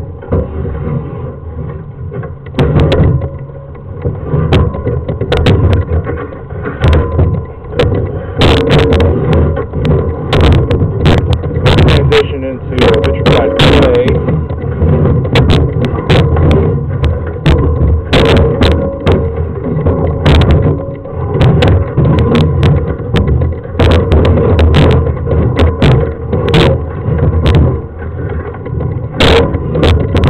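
Rubbing and repeated knocks from a sewer inspection camera's push cable being fed down a lateral sewer line, the camera head bumping along the pipe.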